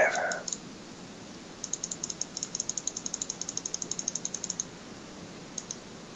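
Typing on a computer keyboard: a quick, fairly even run of key clicks, about ten a second for some three seconds, then a couple of single clicks near the end.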